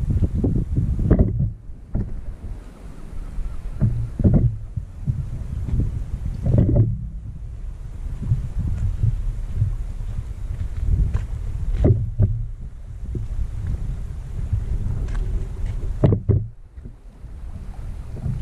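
Wind buffeting the microphone, a steady low rumble. Several brief knocks and rustles break through it, about a second in, near 4 and 6½ seconds, and twice more later.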